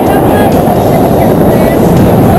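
Wind buffeting the camera's microphone during a tandem parachute descent under an open canopy: a loud, steady, rumbling rush of air.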